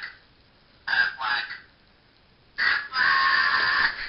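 Aflac talking plush duck squeezed, its voice box quacking "Aflac" twice: a short call about a second in and a longer, steady one near the end.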